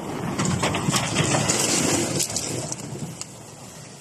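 River ice crunching and crackling, a dense run of fine cracks heard through a phone's microphone, loudest in the first two seconds and then fading.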